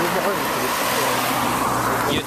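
Car driving past on a wet road, its tyres hissing on the wet surface, with a steady low engine hum from about half a second in.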